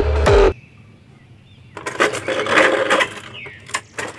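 Electronic music cuts off about half a second in. After a short quiet, a clear plastic blister tray of action figures crinkles and clicks as it is handled.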